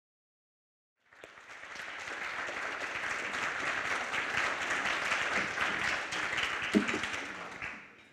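An audience applauding. The clapping starts about a second in, swells and holds, then dies away near the end, with one brief louder sound just before it fades.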